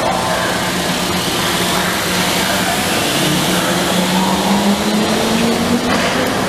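Rubber-tyred Metromover people-mover car running along its concrete guideway: steady tyre rumble with an electric drive whine that rises a little in pitch over the second half.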